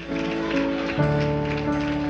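Soft background music of sustained chords, with held notes that change about half a second in and again about a second in.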